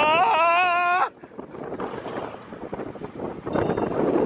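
A rider on a moving roller coaster lets out a long, wavering whoop for about a second, which cuts off sharply. Then comes the rushing of wind on the microphone and the rumble of the coaster train running along its track, growing louder near the end.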